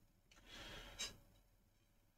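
Near silence, with a faint short breath-like hiss about half a second in.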